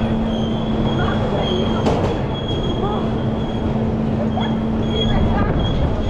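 Intamin ZacSpin roller coaster car running on its steel track: steady wheel and track noise with a low hum and a thin high whine above it that drop out briefly and come back.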